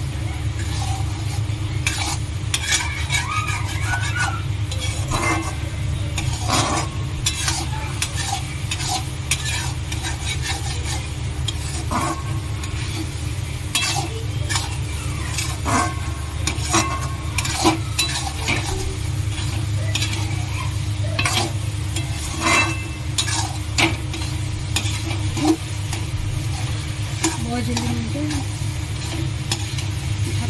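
Perforated metal spatula scraping and clinking against a metal kadhai as egg bhurji is stirred, with frying sizzle from the pan. The scrapes and taps come irregularly all through, over a steady low hum.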